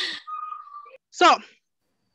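A brief whistle-like tone, held level on one pitch for under a second, between a woman's spoken words.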